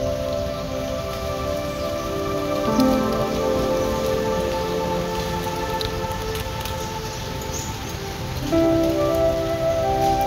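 Background music of held, sustained chords that change about three seconds in and again near the end, over a steady rain-like hiss.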